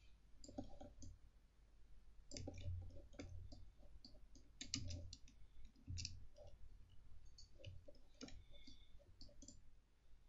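Faint, irregular clicks from a computer mouse and keyboard, a dozen or more scattered unevenly, over a steady low hum.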